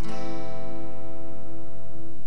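Acoustic guitar strummed once on an A minor chord right at the start, the chord left to ring and slowly fade.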